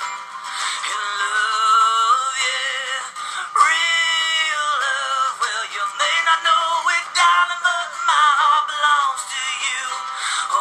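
A song with a singing voice holding and bending long notes, no clear words, between sung lines. The sound is thin, with almost no bass.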